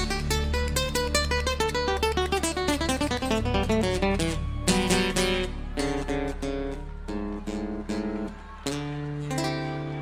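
Background music: a solo acoustic guitar passage without singing. It plays quick runs of picked notes for the first few seconds, then slower, held notes and chords.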